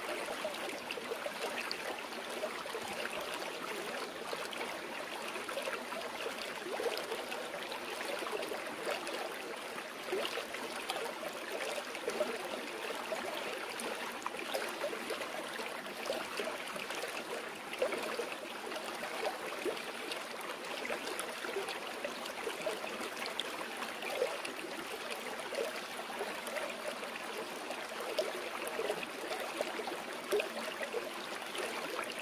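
Water of a stream flowing steadily, an even rush with many small irregular splashes and no break.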